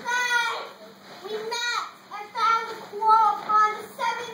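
Children's high voices raised in about four short calls, with no accompanying music.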